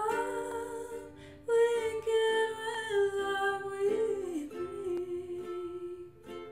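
Woman singing a slow melody in long held notes, sliding up into the first, over her own ukulele accompaniment.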